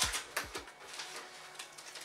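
Plastic wrapper of a Galaxy Cookie Crumble chocolate bar being torn open and crinkled by hand: a few sharp crackles in the first half second, then fainter rustling.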